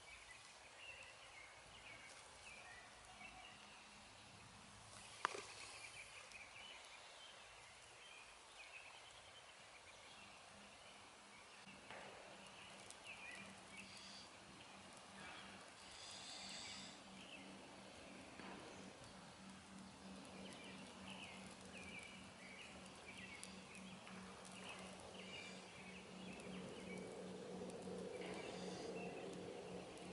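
Very quiet woodland ambience with faint distant birdsong and a single sharp click about five seconds in. Near the end, soft breathy blowing grows louder as a smouldering bow-drill ember in a tinder bundle is blown toward flame.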